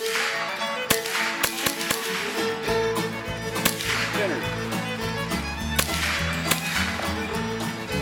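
Scoped rifle firing about half a dozen sharp shots at uneven intervals. A country song with fiddle plays over them, and a bass line comes in partway through.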